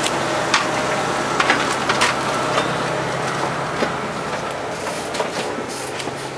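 A steady mechanical hum with a hiss runs throughout. Several short clicks and knocks come in the first few seconds as the motorhome's entry door is opened and someone climbs in.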